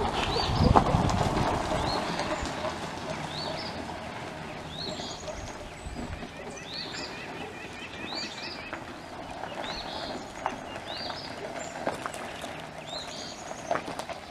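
Small birds calling over and over, each call a short rising chirp about every second or so, with a quick rattling trill in the middle. A low rumble fades out over the first two seconds, and a few sharp clicks sound, the loudest near the end.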